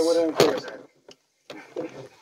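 A man's drawn-out exclamation with a sharp click about half a second in, then a short pause and a few small knocks from plastic wrestling action figures being handled.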